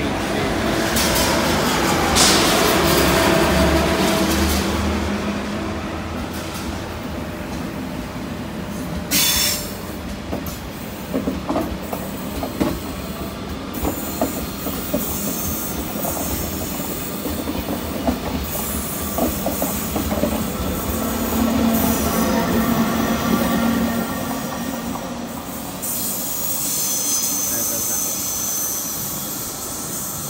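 Eurostar TGV high-speed train pulling out slowly past the platform, its wheels squealing on the rails and clicking over the track. It is loudest in the first few seconds, with a sharp screech around nine seconds in, then goes on quieter and uneven as the carriages pass.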